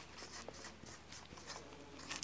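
A marker pen writing a word on a whiteboard: a series of short, faint strokes.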